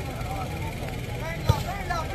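A single sharp slap of a hand striking a volleyball about one and a half seconds in, over crowd voices and a steady low hum.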